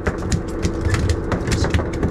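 A quick irregular run of clicks and knocks, several a second, on a fishing boat, over a steady low rumble.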